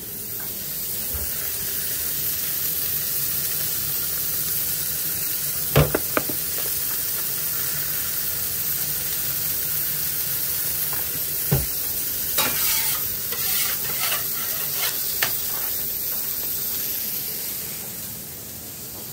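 Beef burger patties sizzling steadily on a hot flat-top griddle. A couple of sharp metal knocks land about a third and two thirds of the way in, followed by a run of light taps.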